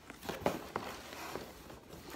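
Brown paper mailer bag being pulled open by hand: a few faint, scattered crinkles and taps of paper.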